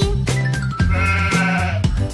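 Upbeat children's song music with a sheep bleat, a wavering "baa", about a second in.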